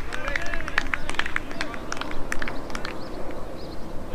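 Small birds chirping in quick, short, high notes, with a steady low outdoor background.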